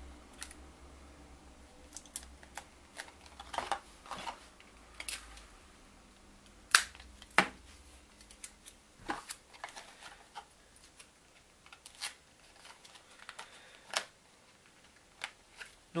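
Thin cardboard being folded and handled by hand: scattered small clicks and crinkles, with a few brief louder rustles, the loudest about seven seconds in.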